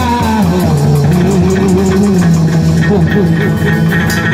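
Chầu văn ritual music accompanying a hầu đồng dance: a plucked-string melody held over a steady, even beat of percussion. A wavering sung line fades out right at the start.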